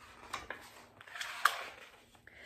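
A picture book's page being turned by hand: a few light clicks and a short paper rustle, loudest about one and a half seconds in.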